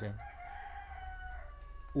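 A faint bird call in the background: one long pitched cry of about a second and a half, dropping in pitch near the end.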